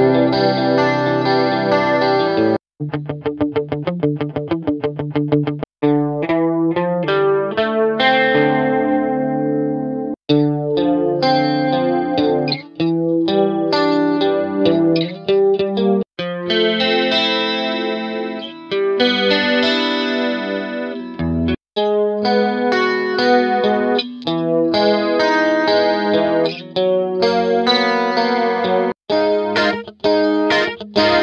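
Guitar sample loops from a pop guitar sample pack, auditioned one after another: several short strummed or picked chord patterns, each a few seconds long and cut off by a brief silence before the next one starts.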